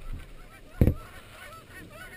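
A flock of geese calling overhead: many overlapping honks, faint and continuous. One dull knock sounds about a second in.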